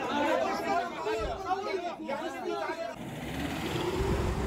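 Several men shouting and talking over each other in Arabic in a crowd. About three seconds in, the voices give way to the low rumble of an ambulance engine driving past.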